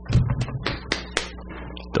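Several quick light taps and clicks in the first second or so, from hands knocking against a desk, over a steady low hum.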